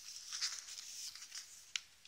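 Cardstock pages of a handmade scrapbook album being lifted and turned by hand: light paper rustling with a couple of short sharp clicks, about half a second in and near the end.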